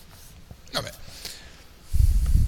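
A man says one short word, "vabbè", about three quarters of a second in; the rest is quiet room tone.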